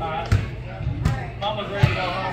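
Low thumps repeating about every three-quarters of a second, three in all, with voices over them.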